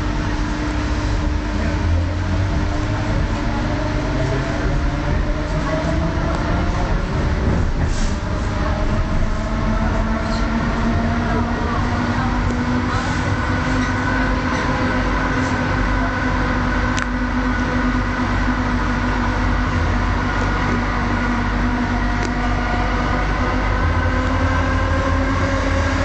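Euskotren 300-series electric train heard from inside the car as it pulls away, its traction motors giving a whine that rises slowly in pitch as it picks up speed. Under it runs a low rumble of the wheels on the track, with a few sharp clicks.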